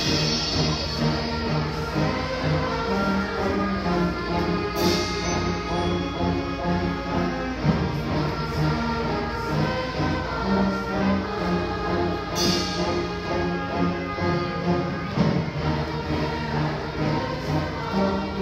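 A middle-school orchestra of strings, low brass and percussion playing live with a choir, full and continuous, with two bright accents about five and twelve seconds in.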